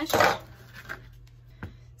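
Kitchen handling on a plastic cutting board: a brief scraping rush, then two light knocks as a peeled sweet potato and a chef's knife are set on the board.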